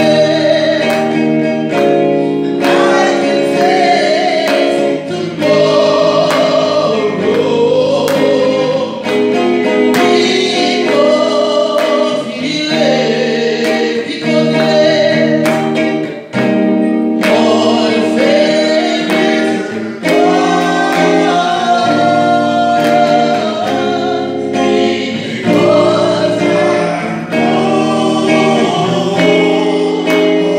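Gospel worship song: a woman singing into a handheld microphone over instrumental accompaniment with sustained chords.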